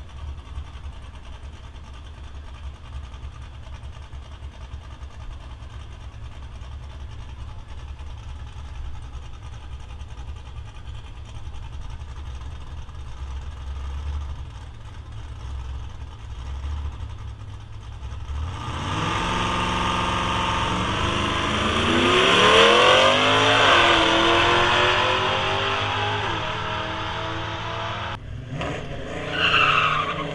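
Drag-racing car's engine idling at the starting line as a low rumble, then about 18 seconds in launching hard down the strip. The engine note climbs in pitch, drops at a gear change and climbs again, then falls away as the car runs off down the track.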